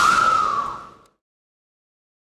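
A long, high-pitched held voice call, rising slightly, over hall noise; it all fades out about a second in, leaving silence.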